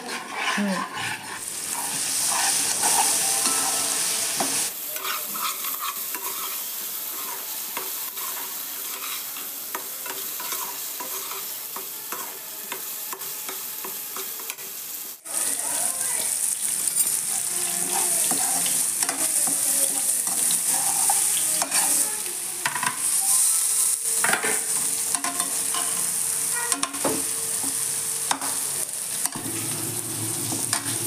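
Thick tomato masala sizzling and spluttering in a nonstick pan while a metal spatula stirs and scrapes through it. The sound drops out for a moment about halfway through, then the sizzling and stirring go on.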